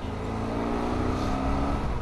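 Motorcycle engine pulling as the bike accelerates, its pitch rising steadily for nearly two seconds.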